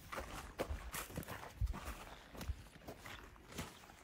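Faint, irregular knocks, roughly one every half second to a second, as cassava tubers are chopped from their stems with a knife and handled on the pile.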